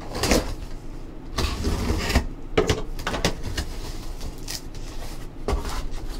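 A box cutter slitting packing tape on a cardboard box, with irregular scraping and knocks as the cardboard is handled and opened.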